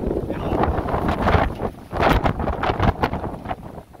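Gusty wind buffeting the microphone, rising and falling in gusts and easing briefly about two seconds in.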